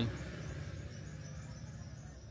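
Insects chirping steadily at a high pitch, over a low steady hum.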